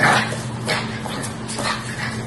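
French bulldog giving three short, high barks, a little under a second apart, the first the loudest, as the puppy and an adult dog face off in play.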